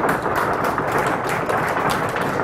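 Audience applause: many hands clapping in a dense, steady patter.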